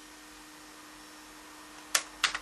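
Quiet room tone of steady hiss and a faint hum, then one sharp click near the end: a computer mouse button being clicked.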